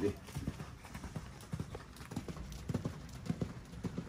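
A horse's hooves thudding dully on a sand arena in an even, repeating canter rhythm.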